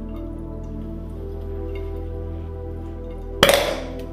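Gas bubbling out of a tube into a jar of water, under background music. About three and a half seconds in comes a single sharp pop, the escaping hydrogen being lit.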